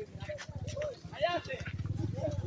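Faint, distant voices talking over a steady low rumble.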